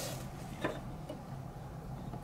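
A faint click of small plastic toy parts being handled and fitted together, about two-thirds of a second in, over a low steady room hum.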